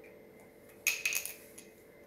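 A quick cluster of light clinks and clicks lasting about half a second, about a second in, as a hand brings a pen to the paper on a tiled floor.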